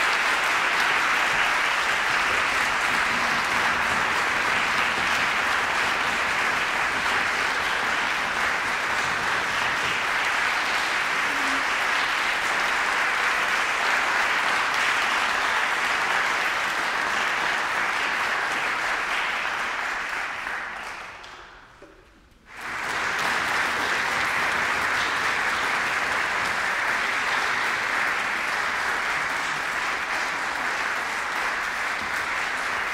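Sustained applause from a concert hall audience. It fades away about twenty seconds in, then comes back suddenly at full level a moment later.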